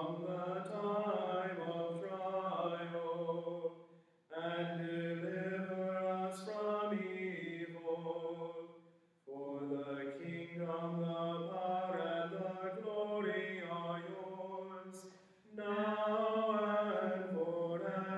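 A man chanting liturgical prayer on held pitches, in phrases about five seconds long with brief breaths between them.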